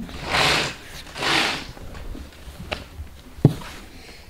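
A curtain being pulled open along its rod in two pulls, each a short rush of noise about half a second long, followed by a few light clicks, the sharpest about three and a half seconds in.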